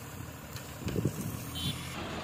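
Tipper truck's diesel engine running while it unloads dense bituminous macadam (DBM) from its raised bed, the stone mix spilling out at the tailgate, with a short louder burst about a second in.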